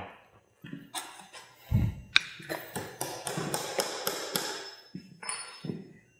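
Hammer driving a nail into a wooden batter board: a heavier knock just under two seconds in, then a run of quick, light taps at about four a second.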